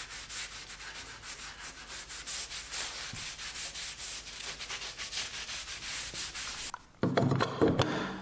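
A rag rubbing finish onto a pine workbench leg in quick, repeated back-and-forth strokes. Near the end the rubbing stops and a short stretch of louder knocks and handling follows.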